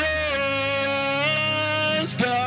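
A male worship singer holds one long high note into the microphone, rising slightly about a second in, over a sustained keyboard accompaniment.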